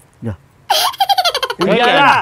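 A person laughing: a short vocal sound at the start, then a run of quick, high-pitched giggles from about two-thirds of a second in, and a louder, longer laugh that falls in pitch near the end.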